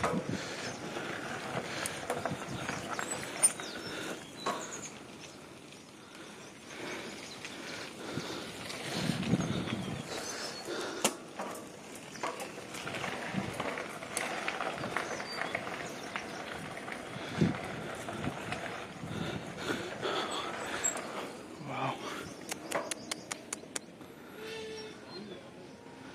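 Outdoor park ambience: faint, indistinct voices with scattered light knocks and rustles, and a quick run of clicks a little before the end.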